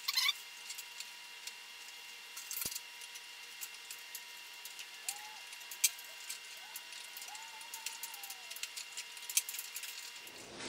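Faint, sparse clicks and taps of hands working a plastic propeller and its fittings at the nose of a foam RC plane, trying to get the propeller off. A few sharper clicks stand out: at the very start, around two and a half seconds, and near six seconds.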